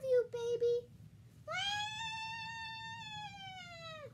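Baby-like crying: short whimpers at the start, then one long high wail held for about two and a half seconds, its pitch slowly falling toward the end.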